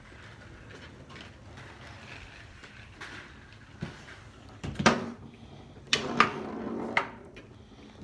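A few sharp knocks from a wooden foosball table's rods and ball about four and five seconds in, then a short burst of clattering play about six to seven seconds in.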